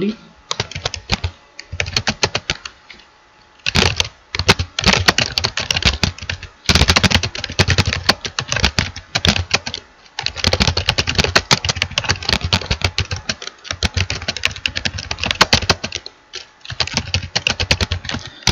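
Computer keyboard typing: rapid runs of keystrokes in bursts, broken by short pauses of about a second.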